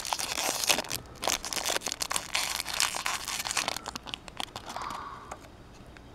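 Small metallic foil wrapper crinkling and tearing as fingers peel it open, in dense irregular crackles that thin out near the end.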